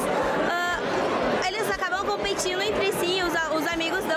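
A young woman speaking close to a handheld microphone, with crowd chatter behind her.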